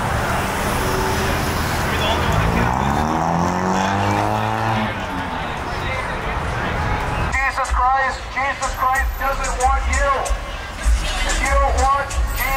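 Street noise with a car engine revving as it passes, its pitch rising and then falling over a couple of seconds. About seven seconds in, the sound cuts abruptly to music with vocals.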